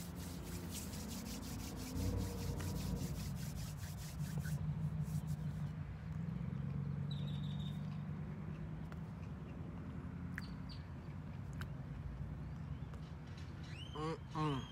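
A mouthful of croissant turkey sandwich with crispy fried jalapeños being chewed close to the microphone. Quick, even crunching fills the first four seconds or so, over a low steady drone.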